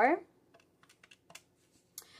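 Faint clicks of a Catiga desktop calculator's plastic keys, pressed several times in quick succession to add a sum to the running total.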